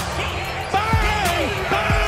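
A basketball bouncing on a court, a dull thud about once a second, over an intro music bed with squeaks and voices.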